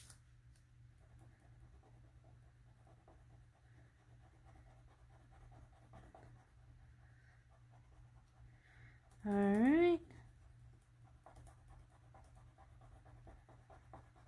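Faint scratching of a wax crayon colouring in boxes on a sheet of paper. About nine seconds in there is one short voice-like sound that rises in pitch.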